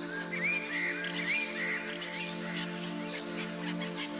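Soft instrumental background music of held notes, with short bird chirps repeating about twice a second over it.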